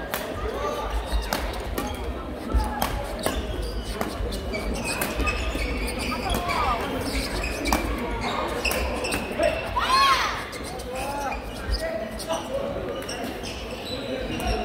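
Badminton rally on a wooden court in a large, echoing sports hall: repeated sharp smacks of rackets hitting the shuttlecock, and sneakers squeaking on the floor, loudest in a rising squeal about ten seconds in.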